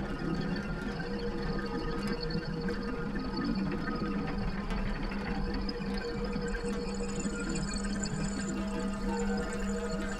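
Ambient drone soundscape of steady, layered hums and sustained tones over a fine crackly texture. A high thin tone enters a little past halfway.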